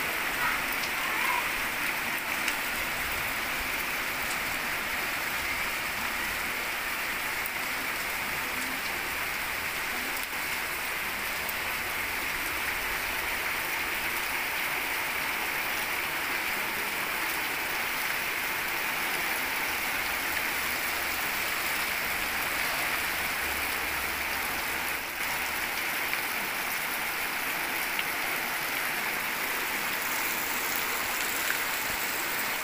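Heavy rain falling steadily on puddles and a muddy dirt lane, an even, unbroken hiss of drops splashing.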